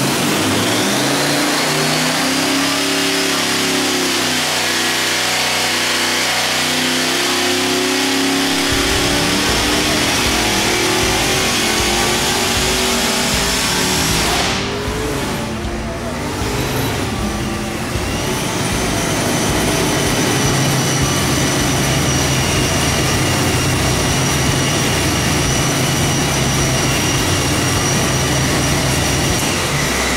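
A 600 cubic inch ProCharger-supercharged, fuel-injected marine engine running on the dyno under a pull on 93-octane pump gas. The revs climb through the first several seconds with the supercharger's high whine rising with them, the sound drops back briefly around the middle, and it then holds at a steady level with a steady high whine.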